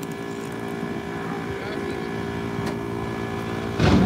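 An engine idling steadily, a constant low drone that holds the same pitch throughout.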